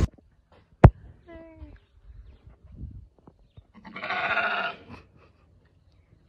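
Sheep bleating: a short, fainter call about a second and a half in, then a longer, louder wavering bleat about four seconds in. A sharp click comes just before the first call.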